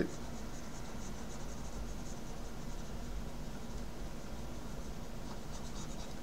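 Pen of a Wacom Bamboo CTL-470 tablet rubbing across the tablet surface in shading strokes, a faint scratching that comes in the first couple of seconds and again near the end, over a steady low hum.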